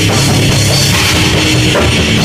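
Extreme metal played live on a distorted electric guitar and a drum kit, loud and unbroken, with a chugging low riff and crashing cymbals over the drums.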